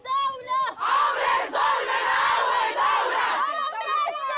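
Protesting women's crowd chanting in call and response. A single high woman's voice calls out, then about a second in many voices shout back together for over two seconds, and a lone voice takes up the call again near the end.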